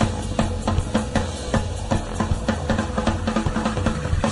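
Band music in an instrumental passage: a drum kit keeps a steady, evenly spaced beat over a sustained bass, with no singing.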